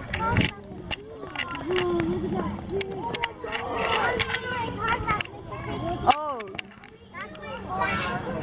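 Background voices of people talking, including a child's voice, with a few sharp clicks among them.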